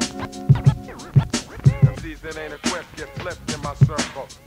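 Mid-1990s hip hop beat with a heavy, repeating kick drum under a looped sample. Record scratching comes in about halfway through.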